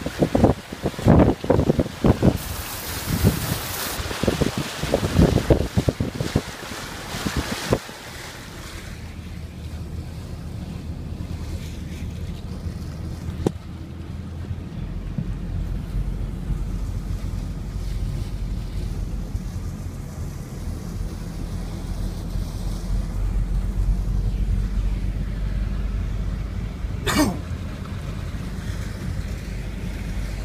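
Car wading through deep floodwater: loud, irregular splashing and rushing for the first several seconds, then the engine's low steady hum under water washing along the car, with one brief sharp sound near the end.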